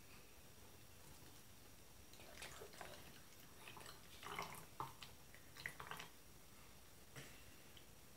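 Vinegar poured from a measuring jug into a model volcano: faint trickling and drips in a few short spells, starting about two seconds in.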